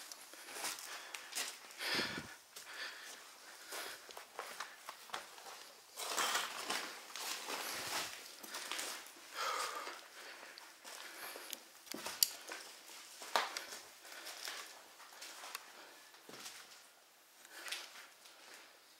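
Footsteps climbing a staircase littered with loose paper and debris, each step crunching and rustling the scattered papers in an irregular pattern.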